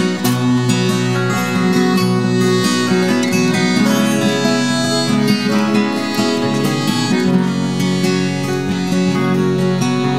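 Live folk band playing an instrumental passage: several strummed and picked acoustic guitars with accordion holding sustained chords over them, no singing.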